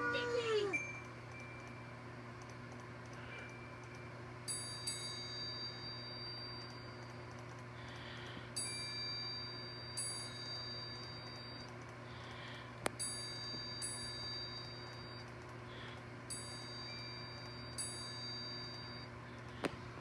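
Soft chime tones played from a computer: four chimes about four seconds apart, each ringing for a few seconds, over a steady low hum.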